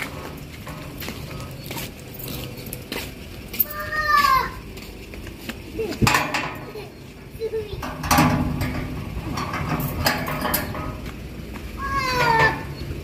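Black metal gate being closed and locked by hand: scattered metallic clicks, knocks and rattles from the lock and the gate's bars.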